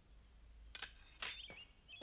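Faint background birdsong: small birds giving short chirps a few times, with two brief soft brushing sounds in the middle.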